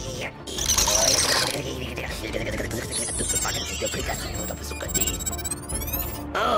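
Sci-fi film sound effects of mechanical clicking and ratcheting, a robotic scanning-and-hacking texture, over background music. A rising electronic sweep comes in just before the end.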